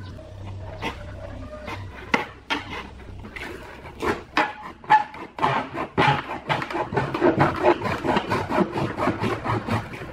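Knife sawing through the wall of a large plastic water-cooler jug, the thin plastic scraping and crackling with each stroke. The strokes come quicker and louder from about four seconds in, several a second.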